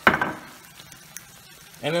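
Pasta in sauce in a hot frying pan sizzling: a sharp burst right at the start that dies away within about half a second.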